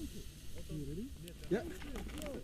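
Voices of people talking in the background, with a brief hiss in the first half-second.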